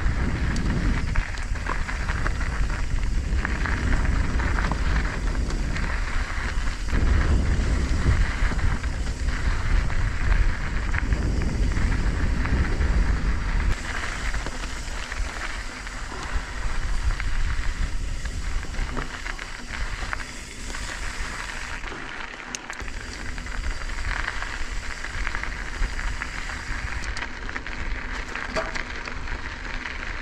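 Mountain bike riding on a loose, gravelly dirt singletrack: tyres crunching over the grit with wind buffeting the camera microphone, the low rumble heavier in the first half and easing about halfway through.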